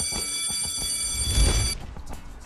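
Electric school bell ringing steadily, cutting off suddenly about three-quarters of the way through, over background music; a low thump lands just before it stops.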